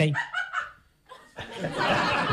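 Laughter from the audience of a live stand-up comedy recording. It swells up about a second and a half in, after a short near-silent gap.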